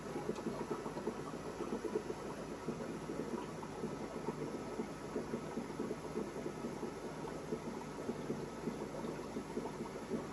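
Steady bubbling and hum of air-driven aquarium sponge filters, an unbroken crackly rush of air bubbles through water with no pauses.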